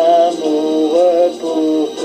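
Music: a French love song, a voice singing a melody over an instrumental backing, with a short break between phrases near the end.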